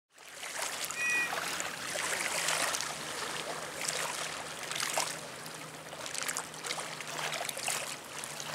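Harbour water lapping and splashing irregularly, over a steady low hum, with a brief high two-note chirp about a second in.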